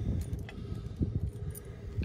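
A bunch of keys jangling, with a few small metallic clicks as a key is worked into a Proven Industries trailer hitch lock.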